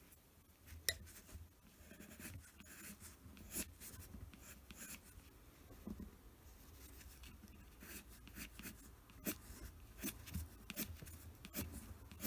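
Pencil drawing short, quick strokes on paper, each a brief faint scratch, coming at irregular intervals about once a second.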